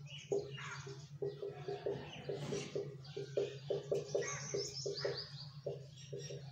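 Small birds chirping repeatedly in quick short calls, with a rapid falling trill about four and a half seconds in, over a steady low hum.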